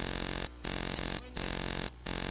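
Steady electrical buzz on the broadcast audio line, one fixed pitch with many overtones, cutting out briefly about every 0.7 seconds.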